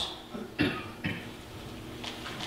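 A person giving a few short coughs to clear the throat, three brief bursts in the first second, the middle one loudest.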